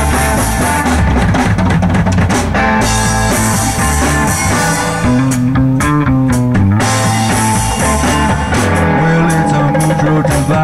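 Rock band playing live: drum kit and percussion, electric guitars, electric bass and keyboard, with bending guitar notes over a steady beat.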